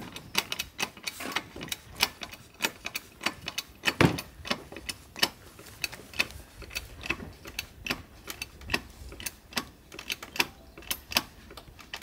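Hydraulic bottle jack being pumped by hand under a timber house post, its handle and pump clicking two or three times a second, with a louder knock about four seconds in, as the old house is lifted.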